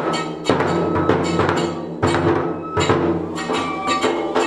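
Nanbu kagura accompaniment: a taiko drum struck in a quick, uneven rhythm, including rim strikes, with small hand cymbals ringing on the strokes and a held high flute note.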